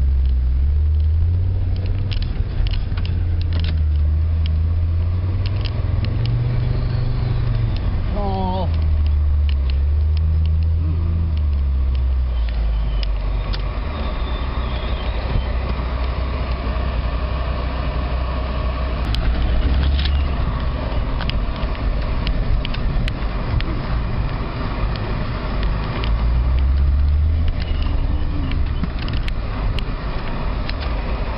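Off-road 4x4's engine running at low revs, its rumble rising and falling as it crawls over a rough dirt and rock track, with frequent knocks and rattles from the vehicle jolting over the ground.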